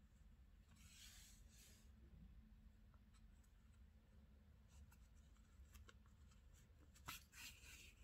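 Near silence with faint rustling of yarn drawn through crocheted fabric while a sewing needle stitches yarn hair onto a crocheted doll head, a few soft ticks, and a brief louder rustle about seven seconds in.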